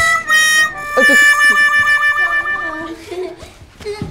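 Comic music sting of held, reedy chords: a short chord with one note bending up into it, then a longer chord from about a second in that fades away near three seconds.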